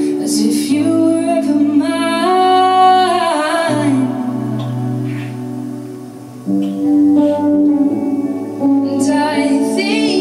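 Live band music: a woman singing over electric guitars. The voice drops out in the middle while the instruments hold long notes and grow quieter, then the band comes back in suddenly about six and a half seconds in, and the singing returns near the end.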